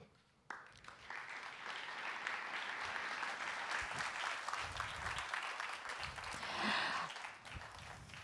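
Audience applauding, starting about half a second in, growing louder and then dying away near the end.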